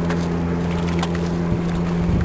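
A steady engine hum with a constant low pitch.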